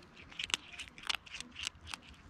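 A cat chewing dry kibble: crisp crunches in about five quick bursts.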